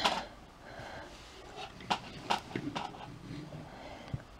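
Quiet room tone with a few faint, short clicks about halfway through.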